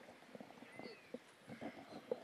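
Faint microphone handling noise: soft, irregular knocks and rustles as the microphone on its stand is touched and moved.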